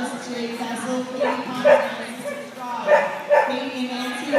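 A dog barking in short sharp barks, about four in the second half, over a background of voices.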